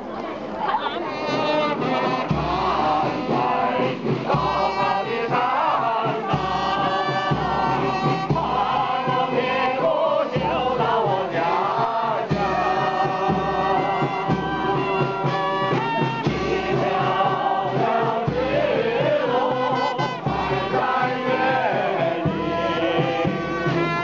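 A large group of people singing together in chorus from songbooks, many voices holding long sung notes, with men's voices prominent.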